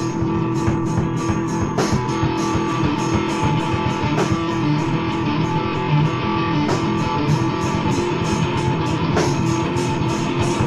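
Grunge-era alternative rock band playing electric guitar, bass and drum kit, with a steady beat of cymbal strokes about four a second. It is a home 4-track cassette recording, dull in the highs.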